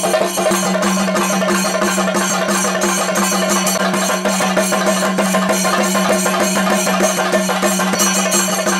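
Traditional percussion music: rapid, dense drumming over a steady, sustained drone held on one pitch.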